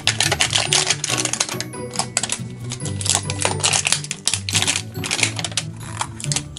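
Crinkling and crackling of an LOL Surprise ball's wrapper layers as they are peeled off by hand, a rapid irregular rustle, over background music with a steady low bass line.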